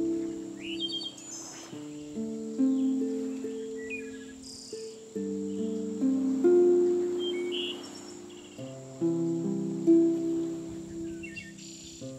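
Slow harp music, plucked chords ringing out and fading one after another, with birds chirping now and then over it and a steady high insect-like trill in the background.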